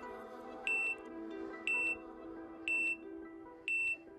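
Workout timer's countdown beeps: four short, high electronic beeps, one a second, counting down the last seconds of the exercise interval. Soft background music runs under them.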